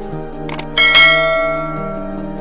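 A subscribe-button sound effect: two quick clicks about half a second in, then a bell chime that rings out and slowly fades, over soft background music. The chime is the loudest sound.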